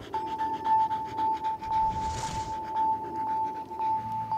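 A dog panting in quick, even breaths, over a steady high-pitched held tone.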